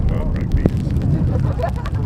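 Wind rumbling on the microphone, with distant voices calling out indistinctly.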